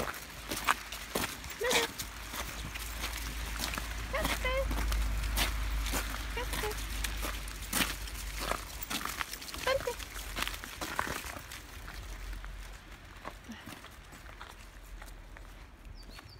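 A pack of leashed dogs jostling close to the microphone: scuffling and clicking, with a few short high-pitched whines. A low wind rumble runs on the microphone and eases off in the second half.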